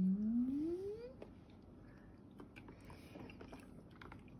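A single voice-like call, held low and then gliding steadily upward in pitch, ending about a second in; after it, faint wet squishing and small clicks as hands work slime in a plastic tub.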